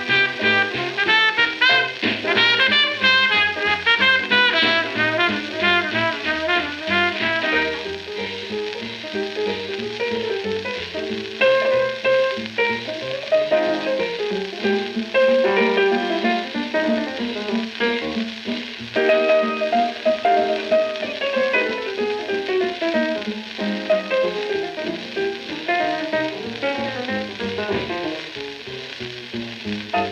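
A 78 rpm shellac record of a 1945 swing-era jazz combo playing: trumpet, trombone, tenor saxophone, piano, bass and drums, with the shellac's surface hiss underneath. The music gets quieter near the end.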